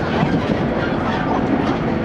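Steady running noise heard inside a moving JR West Series 115 electric train car: wheels rolling on the rails with a low hum and a few faint clicks from the track.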